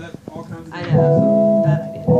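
A guitar chord struck about a second in and left ringing as several steady held notes, after some talk.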